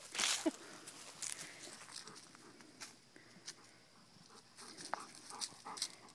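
Dogs' paws crunching and scuffing through dry fallen leaves: a louder rustling burst near the start, then scattered short crackles.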